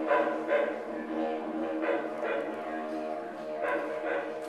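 Didgeridoo played live: a continuous low drone, with bright accents rising over it again and again in a loose rhythm.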